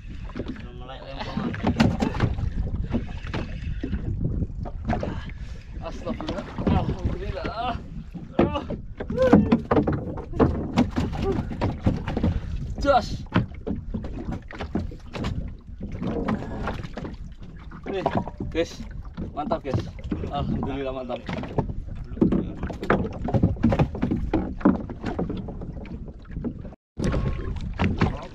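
Voices talking over a steady low rumble of wind and water around a small wooden fishing boat at sea.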